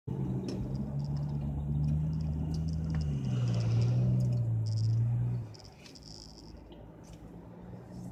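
A car's engine and road drone inside the cabin while driving, a steady low hum that drops in pitch about three seconds in as the car slows. About five seconds in it falls much quieter as the car comes to a stop.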